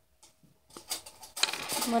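Near silence at first, then light clicks and clinks of hands handling small packets and utensils over glass mixing bowls, getting busier about a second and a half in; a child's voice at the very end.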